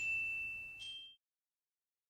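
Two high notes struck on a mallet percussion instrument with metal bars, each ringing on: one at the start and a higher one just under a second later. The sound cuts off suddenly a little over a second in.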